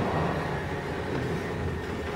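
Indistinct, echoing murmur of voices in a large lecture hall, over a steady low rumble.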